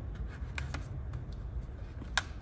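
Hands pressing electrical tape down onto a clear plastic food tub, with rubbing and a few small sharp clicks of the plastic and tape over a low rumble.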